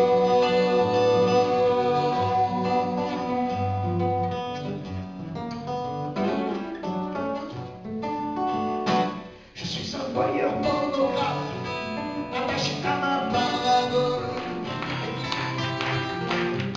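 Live acoustic music: acoustic guitars plucking and strumming under a woman's singing, with held notes. The music drops away briefly about nine seconds in, then picks up again.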